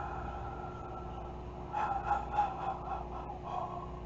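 A man's long breathy exhale trailing off, then a few short gasping breaths as he catches his breath.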